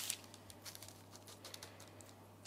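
Faint rustling and small crinkles of baking paper as a ball of ground beef is pressed flat between its folded halves by hand. A louder crinkle fades out right at the start, and only light scattered ticks follow.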